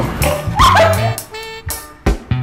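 Upbeat comedy background music with a bass line and plucked guitar. About half a second in, a short high yelping cry is laid over it.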